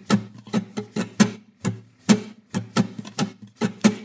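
Guitar strummed in a steady, even rhythm of about four strokes a second, the chord ringing between strokes; the strumming hand keeps a constant motion.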